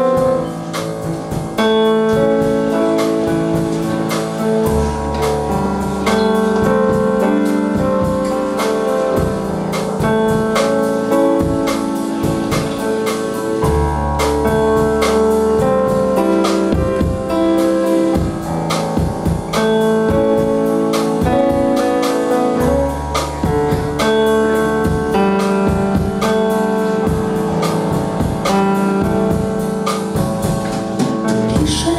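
Live band playing an instrumental introduction: sustained keyboard chords with low notes changing every few seconds, over a steady drum-kit beat, no voice yet.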